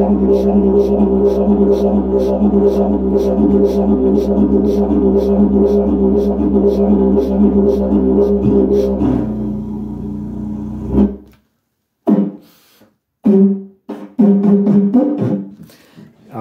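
A 143 cm bloodwood didgeridoo in the key of C drones steadily, played fast with sharp rhythmic accents about two to three times a second. The accents stop about nine seconds in and the drone cuts off about two seconds later, followed by a few short bursts of sound.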